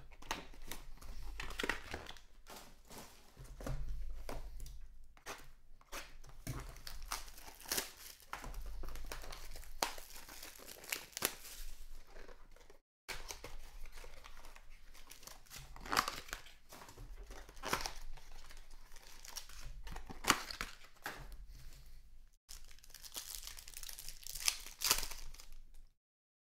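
Foil wrappers of trading card packs torn open and crinkled in the hands, a continuous run of irregular crackles and rustles, with the cards shuffled out of them.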